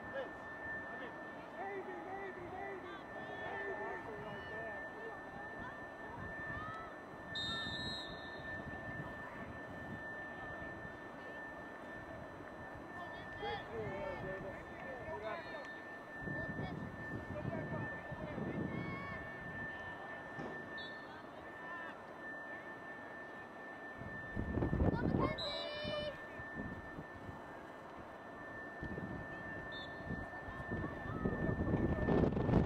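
Scattered distant voices shouting and calling across an open playing field, over a steady high-pitched electronic tone. Low rumbling gusts of wind hit the microphone about halfway through and again near the end, the second the loudest.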